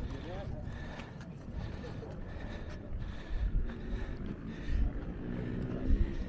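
Voices of people talking around the camera, words not clear, over a low rumble of wind buffeting the microphone, with a few louder gusts in the second half.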